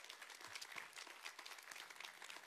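Faint, scattered clapping from a congregation: a few people applauding a point in the sermon.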